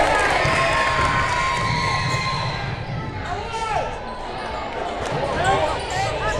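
Basketball game play in a gym: a ball bouncing on the hardwood court and sneakers squeaking, over the murmur of spectators' voices.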